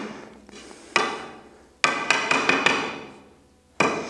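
Knocks of a wooden lath on a steel screed rail bedded in dry levelling fill, tapping it to height: one knock about a second in, then a quick run of several more, each with a short metallic ring.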